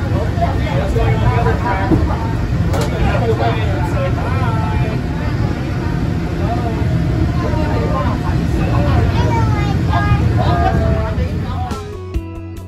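Peak Tram funicular car running down its track, heard from inside the car: a steady low hum from the ride under people chatting throughout.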